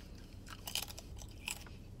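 A person biting and chewing a crunchy snack: a few faint crunches, a cluster a little over half a second in and another about a second and a half in.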